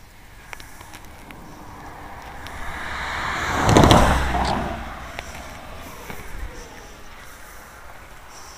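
A car driving past on the road, growing louder to a peak a little under four seconds in, then fading away.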